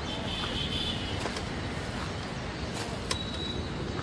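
Steady outdoor background noise with no clear source, a faint high squeal for about the first second, and a single short click about three seconds in.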